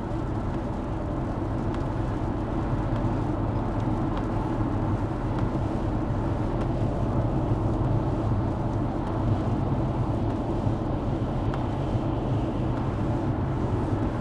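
Steady engine hum and road noise heard from inside a vehicle's cabin while it cruises at highway speed.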